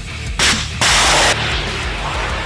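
A shoulder-fired launcher firing: two loud blasts about half a second apart, the first short and sharp, the second longer and rushing. A music bed plays underneath.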